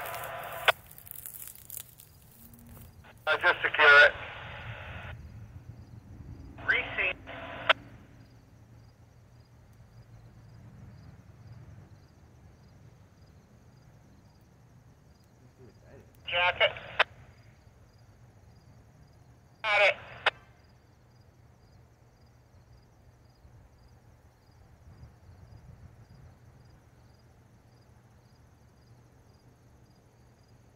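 Short bursts of railroad crew voice transmissions over a radio scanner's speaker, four in all, coming about 3, 7, 16 and 20 seconds in, with a faint steady low rumble underneath.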